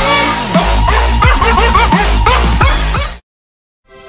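Electronic bork remix: a small dog's single bark, sampled and pitched into a melody of quick repeated barks over heavy bass. The dog is Gabe, a miniature American Eskimo dog. The music cuts off suddenly about three seconds in, leaving silence.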